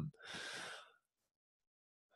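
A person's short intake of breath, under a second long, close to the microphone.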